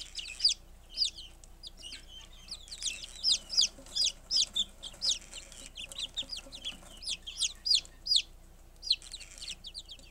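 A brood of buff Silkie chicks peeping: many short, high-pitched peeps overlapping, several a second, with brief lulls.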